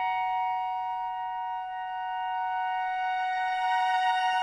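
Contemporary classical chamber ensemble holding one steady, high chord.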